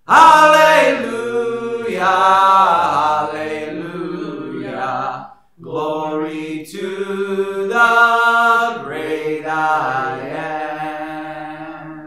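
A man singing a slow song with long held notes, accompanying himself on an acoustic guitar. The singing breaks off briefly about five seconds in, then grows quieter toward the end.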